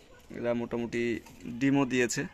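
Domestic racing pigeons cooing in the loft: a few low, steady coos in quick succession.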